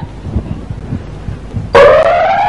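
A lottery ball-draw machine's motor starts near the end with a sudden, loud whine that slowly rises in pitch, after a quieter stretch of faint low thumps.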